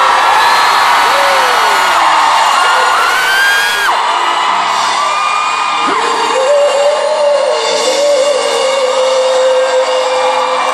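Live pop concert heard from the audience: fans scream and whoop over the band for the first few seconds, then a single voice holds a long, wavering sung note over the accompaniment.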